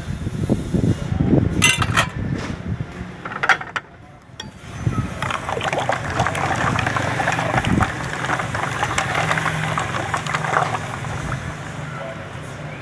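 A ladle stirring and scooping spiced pani puri water in a clay pot, a steady sloshing splash from about five seconds in. Before it come a few light clinks of a spoon against a plate, over a low background hum.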